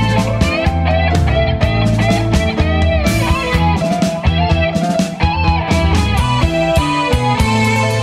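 Instrumental progressive rock passage: electric guitar playing a run of notes, some of them bent, over bass and drums, with no vocals.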